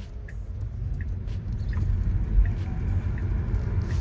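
Low road and tyre rumble inside the cabin of a Tesla Model 3, an electric car with no engine note, growing gradually louder as it speeds up from walking pace to about 20 mph.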